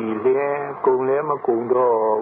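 A person's voice talking without a break, on a recording with a narrow, radio-like sound.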